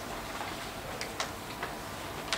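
Three or four light, sharp clicks in quick succession in the second half, over steady room noise.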